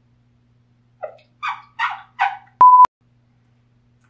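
A man's voice makes three short sounds about 0.4 s apart, then a single flat beep of about a quarter second, starting and stopping abruptly, of the kind edited in to censor a word.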